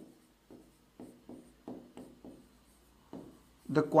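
Stylus writing on the glass of an interactive touchscreen display: a quick run of short taps and scratches, about three a second, as letters are drawn. A man's voice comes in near the end.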